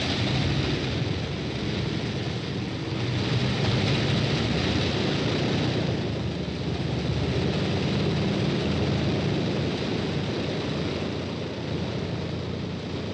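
A Vickers Wellington bomber's radial piston engines running steadily on the ground with propellers turning, on their first run after the aircraft was built. The sound swells slightly a few seconds in.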